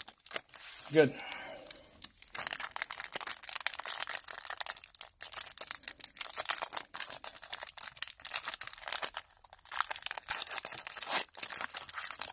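A foil trading-card pack wrapper from a 2016 Donruss Optic box being torn open and peeled back by hand, a busy crackle of crinkling foil starting about two seconds in.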